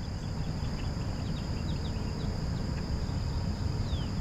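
Outdoor pond-side ambience: a steady high insect trill and a few short, quick chirps over a low, uneven rumble.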